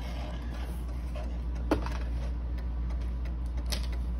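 Light handling clicks from an old mantel clock's wooden case and its opened round back door, one sharper click about two seconds in, over a steady low hum.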